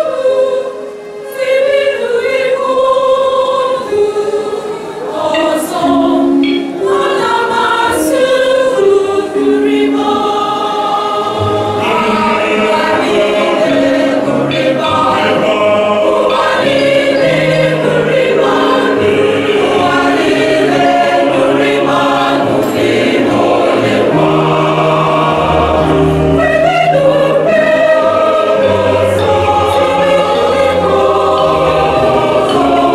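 Church choir singing an Igbo choral song in parts. A low, sustained bass line joins about twelve seconds in.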